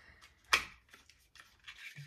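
A small cardboard product box being opened by hand and a glass bottle of hair oil taken out: one sharp click about half a second in, then soft rubbing and faint clicks of cardboard and bottle.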